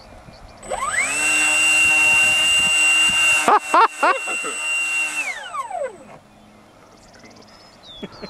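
The electric motor and four-blade propeller of a thrust-vectoring RC delta model running up on the bench-style hand hold. The whine climbs quickly to a steady high pitch, wavers briefly about halfway, and then winds down and stops.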